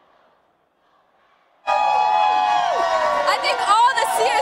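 Near silence for a moment, then, a little under two seconds in, a crowd of football fans suddenly starts cheering and yelling loudly, many voices holding long shouts.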